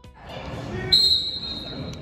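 Spectators in a gym yelling, then a referee's whistle blows one long, high, steady blast about a second in, lasting about a second.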